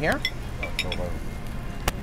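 Cutlery clinking against a grill platter of meats, a few sharp clinks with the loudest near the end, over restaurant background noise.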